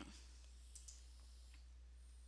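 Near silence with a low steady hum, broken by a faint computer mouse click a little under a second in, used to work through the slides.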